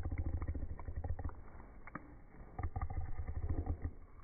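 Small dog chewing a treat close to the microphone: low rumbling mouth noise with clicks, in two bursts, one at the start and one about two and a half seconds in.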